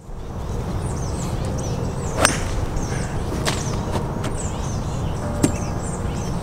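Outdoor ambience with a steady low wind rumble on the microphone and small birds chirping over and over in short high calls. A single sharp crack comes about two seconds in, with fainter clicks later.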